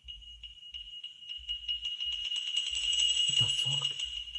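Horror short film soundtrack: a sustained high-pitched ringing tone that swells louder toward the end, with faint ticking along it. A brief low sound comes under it about three seconds in.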